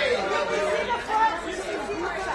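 Several voices talking and calling out over one another: red-carpet photographers shouting directions.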